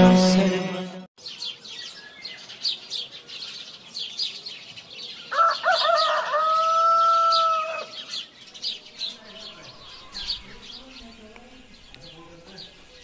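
Small birds chirping in quick repeated notes, and a rooster crowing once about halfway through, one long call.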